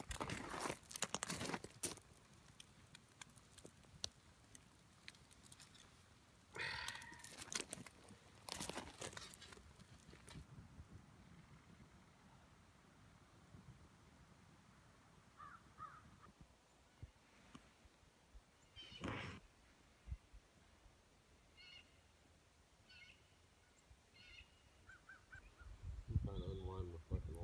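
Mostly quiet, with a few short bird calls scattered through it and some crackling in the first two seconds.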